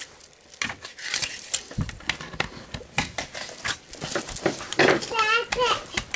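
Hard plastic armor pieces clicking and rattling as they are handled and snapped onto a toy robot. A child's high-pitched voice comes in near the end.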